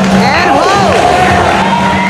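Audience cheering and whooping, with several high voices sliding up and down, over runway music.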